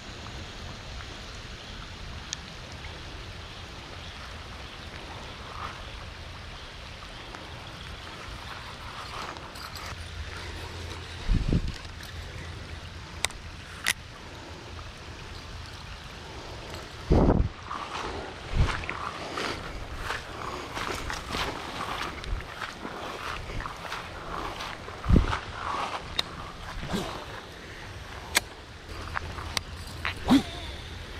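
Steady hiss of rain falling on a pond, with several dull thumps and, in the second half, scattered crackles and rustles from handling the rod and camera.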